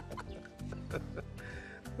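A hen clucking a few short times over soft background music with low sustained notes.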